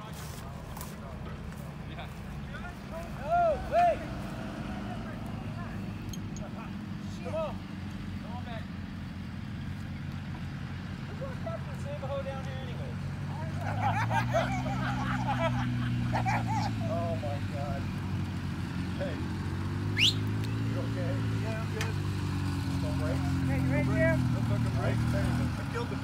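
Truck engine running under load as it tows a dragster out of a muddy ditch on a strap, its pitch rising and falling twice in the second half. Short shouts come over it.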